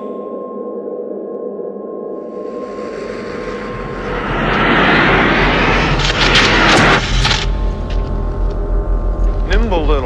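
A spoken-word sound-effects interlude in a break in the metal song. It starts as a low hum with a faint steady tone. A rushing noise swell rises over a few seconds and cuts off suddenly, then a steady low rumble runs on, with voices starting near the end.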